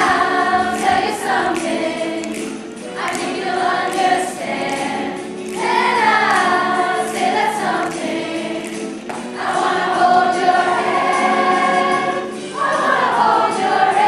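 Large mixed high-school choir singing a pop song, in phrases a second or two long with short breaks between them.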